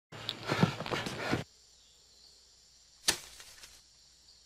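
Movement through forest undergrowth: a burst of rustling and snapping that cuts off suddenly, then one sharp swish about three seconds in.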